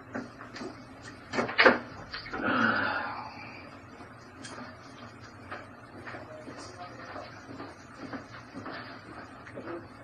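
A plastic water bottle being handled during a drink: two sharp cracks about a second and a half in, followed by a louder rush of noise lasting about a second, then only faint small knocks.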